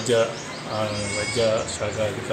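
A man's voice speaking in short bursts, with a brief high, thin whistling tone about a second in.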